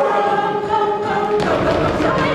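A group of voices singing together in chorus with music, holding one long note and then starting a new phrase about one and a half seconds in.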